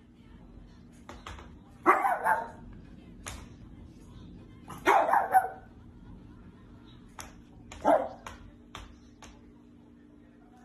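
Small long-haired dog barking three times, about three seconds apart, over a faint steady hum.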